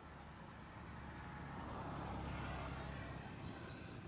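A motor vehicle passing by, its sound swelling to a peak about two seconds in and then fading.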